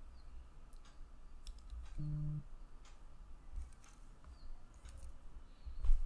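Scattered faint clicks and low knocks from handling things at a computer desk, with one louder bump near the end. A short low hum, about half a second long, sounds about two seconds in.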